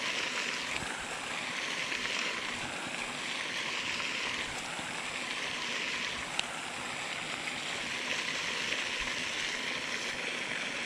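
Steady rushing splash of a pond's spray fountain, with a single brief click about six seconds in.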